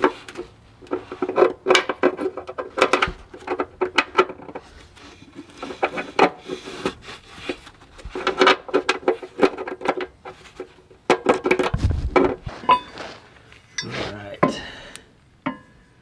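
A steel bolt and its wire clinking and tapping against the steel frame of a Suzuki Carry as the bolt is fished through the frame holes: a long run of irregular small metallic clinks and rattles.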